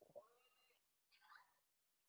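Near silence. Two very faint, brief pitched sounds come through: the first, a few tenths of a second in, rises and falls in pitch; the second, shorter one comes about a second and a quarter in.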